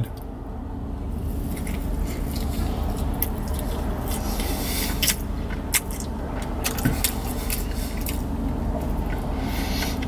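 A man chewing a mouthful of bacon burger close to the microphone: scattered wet mouth clicks and smacks over a steady low rumble inside a car cabin.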